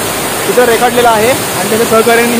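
Stream water rushing steadily over rocks below a waterfall, with a man's voice talking over it.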